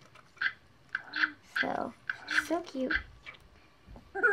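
A girl's soft voice in several short murmured syllables with pauses between.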